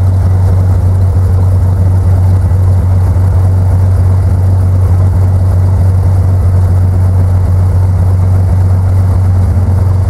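A loud, steady low engine drone that holds the same pitch and level throughout.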